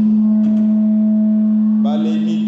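A steady low electronic tone, one note held unchanged with fainter overtones above it.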